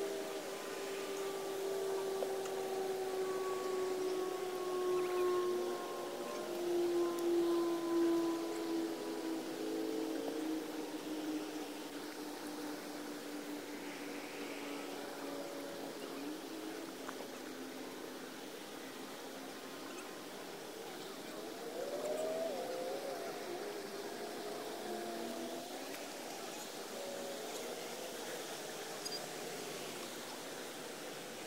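A distant engine drone: one steady tone that slowly falls in pitch over about the first fifteen seconds and fades out. Faint wavering tones come in about twenty-two seconds in.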